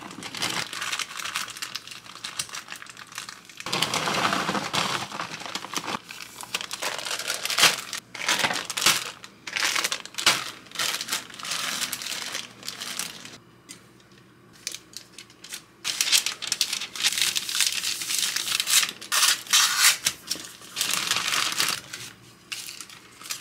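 Plastic food bags crinkling and rustling in irregular bursts as shredded cheese is poured from a bulk bag and packed into smaller bags, with a short lull a little past the middle.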